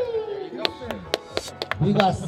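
About six sharp hand smacks, irregular and a little under four a second, among men's voices.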